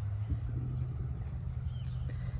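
Low, steady background rumble with no speech over it.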